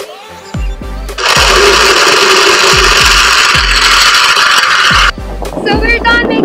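Countertop blender running for about four seconds, crushing ice with cucumber pieces. It starts about a second in and cuts off suddenly near the end, over background music with a steady beat.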